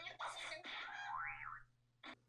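Quiet comic 'boing' sound effect from the anime's soundtrack: a whistle-like tone that swoops up and then down in pitch, ending a little past halfway.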